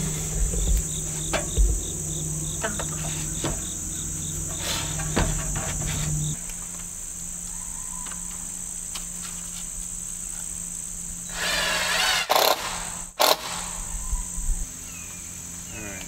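Insects chirping steadily in a high, unbroken drone, with a second insect giving quick regular chirps for the first six seconds or so. Scattered wooden knocks come from rafter lumber being handled on the frame, with a short loud cluster of thumps and rustles about twelve seconds in.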